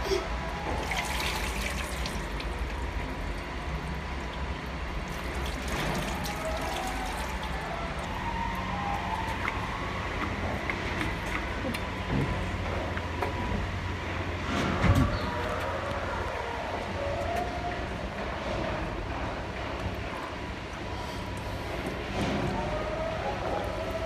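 Water scooped from a plastic bucket with a small plastic jug and poured over a plastic ride-on toy car, splashing in a few bursts, one about a second in and another around six seconds in. A single sharp knock about fifteen seconds in, over a steady low rumble.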